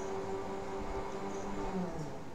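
A man humming one steady low note, which dips in pitch and stops near the end.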